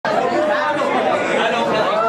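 Several people talking over one another at once, a steady mix of overlapping voices.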